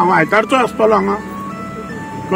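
A man speaking for about a second, then a simple tune of single held notes at changing pitches behind him.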